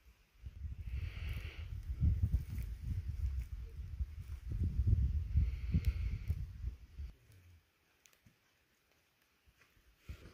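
Low, uneven rumbling and scuffing noise on the camera's microphone, with a couple of brief scratchy rustles, lasting about seven seconds and then stopping, leaving near silence.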